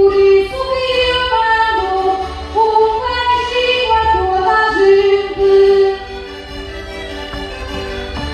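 A woman singing a verse of a Portuguese desgarrada (cantares ao desafio) through a microphone, over instrumental accompaniment. Her line ends about six seconds in, and the accompaniment carries on more quietly.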